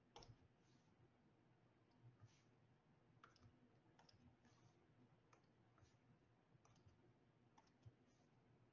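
Near silence with about a dozen faint, irregular clicks and taps from drawing on a digital tablet.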